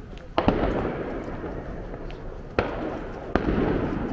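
Aerial fireworks bursting overhead: three booms, about half a second, two and a half and three and a third seconds in, each followed by a long rolling echo.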